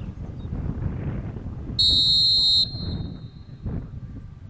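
Referee's whistle, one short steady blast of under a second, about halfway through, signalling that the penalty kick may be taken. Wind rumbles on the microphone throughout.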